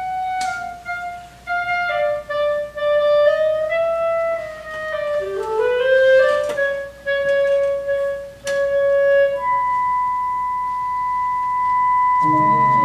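Chamber-ensemble opera music: a solo clarinet plays a slow, winding melody that climbs in a short glide midway. A single high note is then held steadily to the end.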